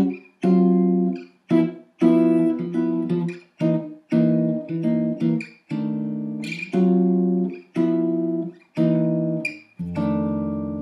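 Hollow-body archtop jazz guitar comping: rhythmic chord stabs, about two a second, most cut short and a few left to ring. Just before the end a fuller chord with a low bass note rings on.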